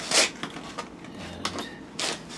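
Kitchen items being handled on a countertop: a short scrape about a quarter second in, then a few light clicks and taps.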